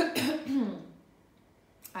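A woman coughs once, clearing her throat: a sharp burst at the start followed by a short rasp.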